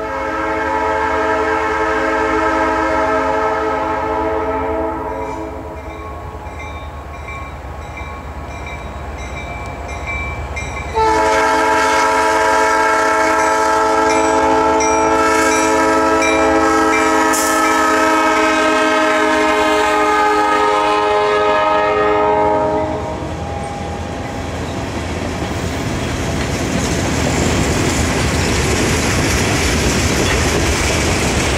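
Norfolk Southern diesel locomotive's multi-note air horn blowing, several tones at once: a blast of about five seconds that fades away, then a second long blast starting sharply about eleven seconds in and held for about twelve seconds. After the horn stops, the rumble and clatter of the freight train's cars rolling past on the rails grows louder.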